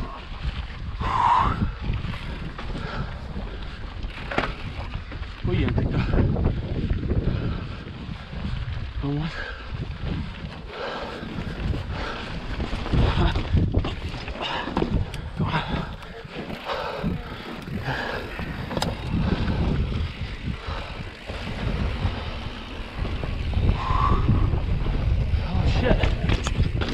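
Mountain bike ridden over rough sandstone, with wind buffeting the microphone, tyres rumbling on rock, and frequent knocks and rattles from the bike over the bumps.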